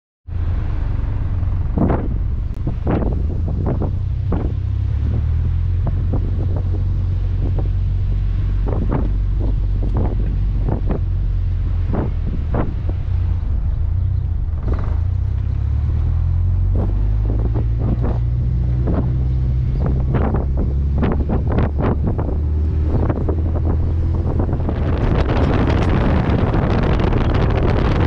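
Low engine and exhaust rumble of a car driving slowly, picked up by a camera mounted on its rear, with many short knocks of wind buffeting on the microphone. The wind hiss grows louder near the end.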